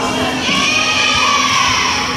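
Young voices shouting together in a gym, one drawn-out cheer that starts about half a second in and sags in pitch near the end.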